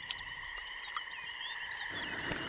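A steady outdoor animal chorus, a ring of several fixed high pitches, with brief high chirps sliding up and down above it and a faint tick about halfway through.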